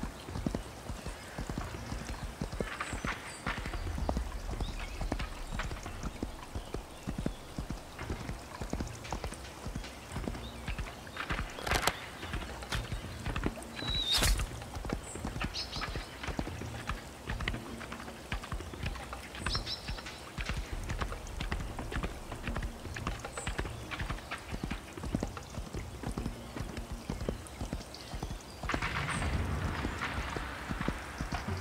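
Horse hooves beating steadily on the ground as a horse is ridden, with a couple of sharper knocks about halfway through and a louder rushing swell near the end.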